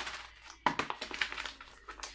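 Crinkling of a resealable plastic pouch of body scrub being handled: a sharp crackle about two-thirds of a second in, then a run of smaller crackles.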